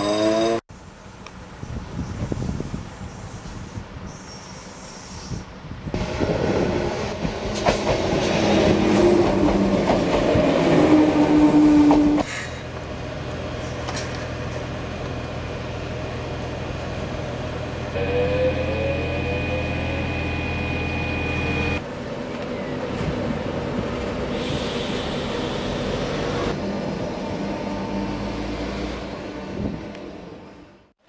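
A Transilien double-deck electric train at a station platform, heard in several short cuts: electric motor whine gliding up and down in pitch as it moves, and a steady high tone for a few seconds near the middle.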